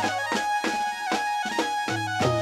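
Live garba dance music: a keyboard melody of held notes over a steady beat of dhol and drum strokes, about two to three strokes a second, each low stroke dropping in pitch.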